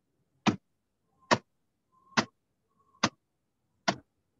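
Five sharp knocks, evenly spaced a little more than one a second, from a club pounding soaked paper into pulp for papier-mâché. The paper has soaked in water for eight to ten days.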